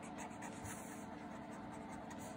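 Blue sketch pen writing in cursive on ruled notebook paper, the felt tip moving faintly and steadily over the page.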